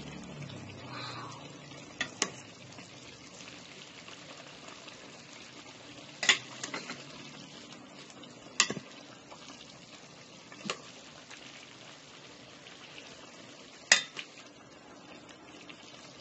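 Metal spoon stirring corned beef and vegetables in a metal pan, the food shifting under a steady faint hiss, with about six sharp clinks of the spoon against the pan's side spread through.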